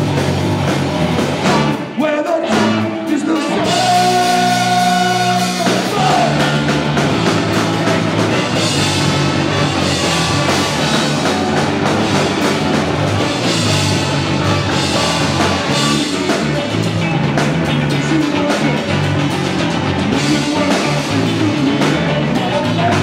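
Live punk band with a horn section (saxophone, trumpets, trombone), electric guitars, bass, drums and vocals playing loud. A short break comes about two seconds in, then a held chord from about four to six seconds, and the full band drives on again.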